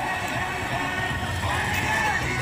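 Music over the low rumble of a family roller coaster train running along its steel track, with faint voices.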